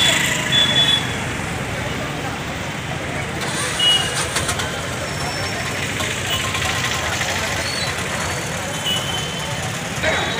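Busy street ambience: traffic running and a crowd talking, with a few short, high-pitched beeps.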